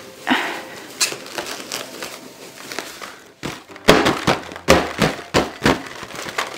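Paper towel rubbed briskly over the outside of a clear latex balloon, a dry scratchy rubbing that builds static so the confetti inside clings to the walls. In the second half the strokes turn sharper and louder, about four a second.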